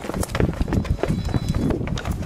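Running footsteps: quick, irregular thuds on the ground, several a second.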